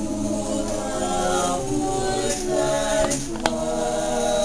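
A small mixed choir of teenage voices singing a Christmas song a cappella in close harmony, holding chords that change every second or so.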